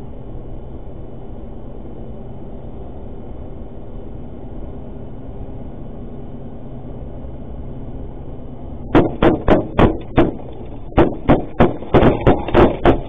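Steady road noise inside an armored cash van's cab, then from about nine seconds in a rapid string of gunshots striking the vehicle, about three a second, a short pause, and a second volley.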